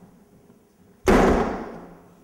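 A single loud bang about a second in, sharp at the start and ringing away over most of a second.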